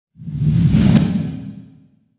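A whoosh sound effect over a low swelling tone, the sting for a news logo reveal: it rises quickly, peaks about halfway with a brief sharp accent, then fades away.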